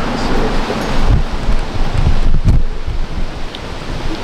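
Wind buffeting the camera microphone: a loud rushing noise with heavy low rumbling gusts about a second in and again around two to two and a half seconds in.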